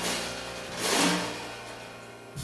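Live piano, bass and drums trio closing a blues tune: one last loud accented hit with a bright crash about a second in, then the final chord dying away.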